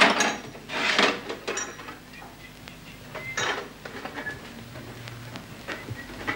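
Glassware and bottles clinking and clattering, in a few sudden bursts: one at the start, two more around a second in, and another about three and a half seconds in.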